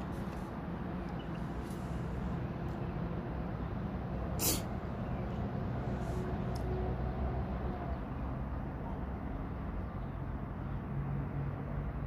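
Steady low background rumble with a faint hum, and one short sharp click about four and a half seconds in.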